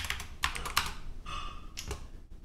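A few separate keystrokes on a computer keyboard as a short ticker code is typed and corrected, with a brief tone in between.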